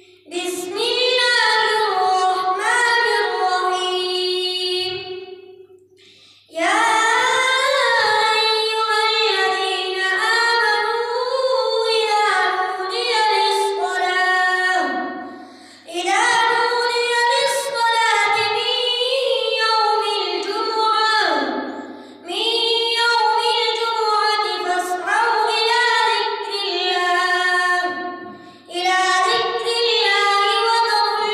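A boy reciting the Quran in melodic tajweed style, holding long ornamented phrases that glide up and down in pitch. The phrases are broken by breath pauses, the longest about five seconds in.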